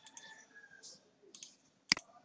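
Computer mouse clicking: a few faint clicks, then one sharp click near the end.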